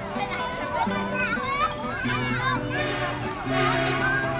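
Many young children chattering and calling out at once, with several high voices overlapping, over background music with long held low notes.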